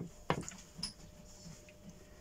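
A utensil clicking against a glass baking dish three times in quick succession as marinated chicken breasts are lifted into the dish, then only faint handling.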